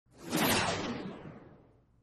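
A whoosh sound effect that swells quickly and then fades out over about a second and a half, its hiss narrowing downward as it dies away.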